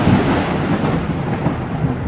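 Rumbling, noisy tail of a boom transition sound effect for an animated number reveal, fading slowly without any tune.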